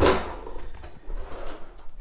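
A sharp knock, then faint scraping and handling noises as a compact Worx mini circular saw is picked up; the saw is not running.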